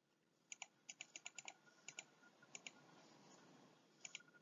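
Near silence broken by faint clicks at a computer, about a dozen in close pairs over the first two and a half seconds.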